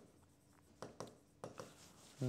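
A stylus tapping and stroking on an interactive display screen as a few faint short ticks over near silence.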